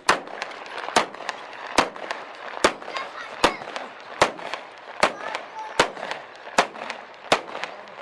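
Loud bangs going off one after another, about ten of them evenly spaced a little under a second apart, each followed by a short echo. Voices are heard faintly in the background.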